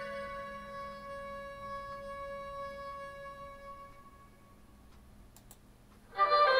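Music played through a Radiotekhnika 35AC-1 three-way loudspeaker and picked up in the room: a held note fades out over about four seconds, then it goes near quiet until the end.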